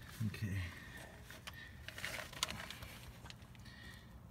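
Rustling and scraping with a few light clicks as a person shifts into position on his back under a car while handling the phone that films, busiest about two seconds in.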